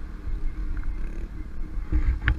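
Steady low drone of a car being driven, picked up by a camera mounted on its hood, with wind rumble on the microphone.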